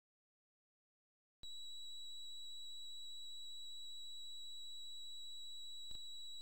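A steady, high-pitched electronic beep from an Amiga demo's sound output, starting about a second and a half in and holding one pitch and level.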